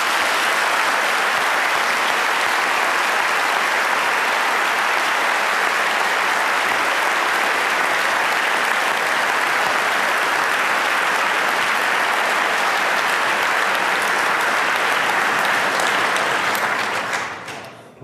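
Large audience applauding steadily, dying away near the end.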